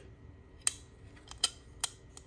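Three sharp plastic clicks from handling the mini fridge's small removable clear plastic water tray, the first about two-thirds of a second in.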